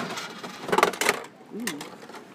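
A gachapon capsule machine's dial handle being turned, with a quick run of clicks from its ratchet a little under a second in.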